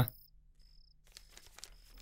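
Cricket chirping in short, high, evenly spaced pulses, over a faint low hum.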